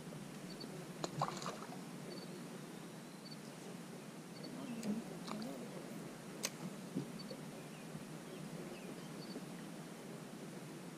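Quiet open-air lake background: a steady faint hiss with small high bird chirps now and then, and a few light clicks and taps, a cluster about a second in and single ones around the middle.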